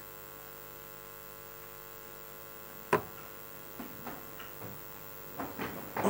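Steady electrical mains hum, with one sharp knock about three seconds in and a few faint soft sounds afterwards.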